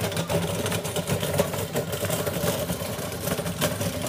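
Small motorbike engine running steadily at low speed, a constant low hum close by.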